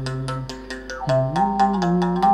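Moungongo, the Gabonese mouth bow, played: its string struck with a stick in a quick steady beat of about six strikes a second, over a sustained low tone that rises in pitch about a second in.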